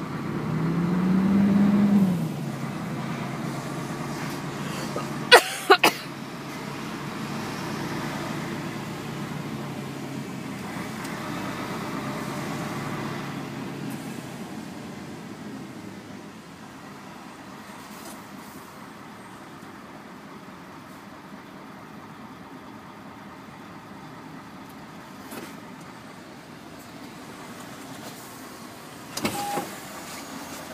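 Truck's diesel engine running, heard from inside the cab as a steady low hum that grows quieter about halfway through. A rising tone fills the first two seconds, and two sharp clicks come a half second apart about five seconds in.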